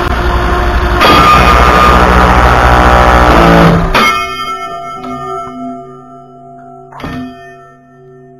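Hacker A60-16L brushless motor on an 8S battery driving a homemade six-blade hollow propeller. It jumps to a loud full-power run about a second in and holds it for about three seconds. A sudden crack follows as the propeller comes apart, and the sound drops to fading ringing tones with a second knock near the end.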